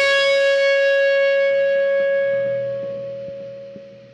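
The final chord of a rock song, a distorted electric guitar left ringing and slowly fading away, with a faint click near the end.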